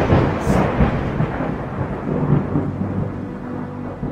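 A sudden loud thunderclap followed by a rolling low rumble that slowly fades, laid over the footage as a sound effect.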